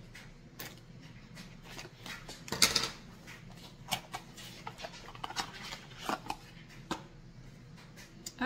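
A small cardboard product box being opened and handled, with scattered light clicks and taps of the carton and the jar inside it. A louder rustle of cardboard comes about two and a half seconds in.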